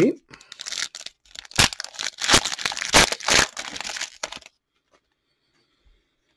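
Foil wrapper of an Upper Deck hockey card pack being torn open and crinkled by hand: a run of crackling rips that stops about four and a half seconds in.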